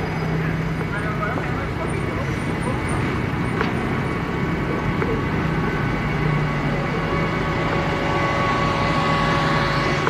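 Steady in-car traffic noise while creeping in slow city traffic: a low engine hum under an even wash of road and traffic noise.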